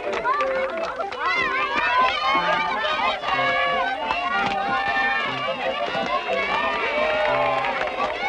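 A crowd of young children shrieking and shouting excitedly all at once, many high voices rising and falling over one another.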